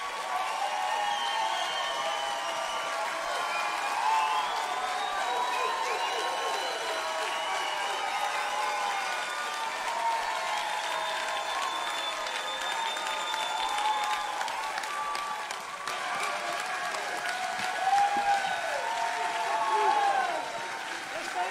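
Audience applauding steadily for a long stretch, with voices calling out over the clapping.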